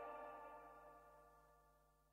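The last chord of a pop song ringing out and fading, dying away into near silence about half a second in.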